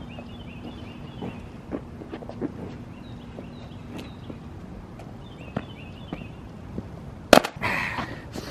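Footsteps on asphalt with small birds chirping faintly, then, about seven seconds in, one loud thud of feet landing hard from a jump, followed by a short noisy burst.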